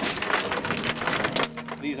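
Oyster shells clattering against one another and onto a wooden table as they are tipped out of a mesh basket: a dense rattle of many small knocks that dies away about a second and a half in.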